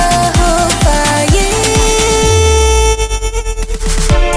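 Instrumental break of an Algerian rai song: an electronic beat with a kick drum about twice a second under held synth melody lines. In the last second the beat breaks into a quick stutter, and it comes back in at the end.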